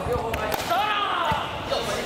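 A sharp slap of an air-filled sports chanbara short sword striking an opponent, about half a second in, among raised, shouting voices.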